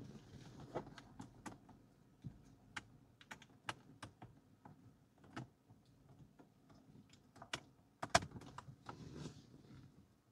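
Faint, scattered clicks and scrapes of a USB flash drive being handled and pushed into a car's USB socket, with a louder click about eight seconds in.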